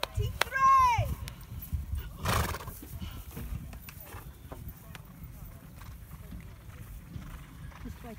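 A horse whinnying in the first second, one call rising and then falling in pitch, with a breathy burst about two seconds in. After that it goes quieter, with low rumbling noise underneath.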